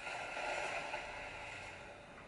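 Rushing spray of water from a hose blasting into a pool, a steady noisy hiss that swells at the start and fades away near the end.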